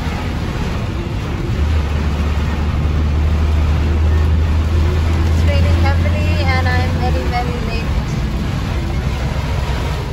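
Car cabin noise heard from the back seat: a steady low rumble of engine and tyres on a wet road with a hiss over it. A faint voice is heard briefly in the middle.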